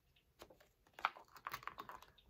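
A picture-book page being turned by hand: faint paper rustles and a handful of short soft clicks, most of them from about a second in.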